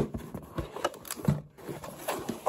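Handling noise from diecast model packaging: a few soft clicks and knocks as the plastic display box and cardboard are moved.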